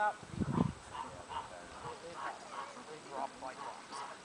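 Faint, scattered quacking from a small flock of domestic ducks.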